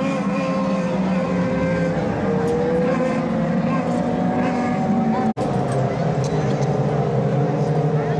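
Several micro modified dirt-track race cars running hard around the oval, their engine notes overlapping and rising and falling as they go through the turns. The sound cuts out for an instant about five seconds in.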